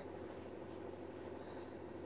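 Quiet room tone: a faint steady low hum with no distinct sounds.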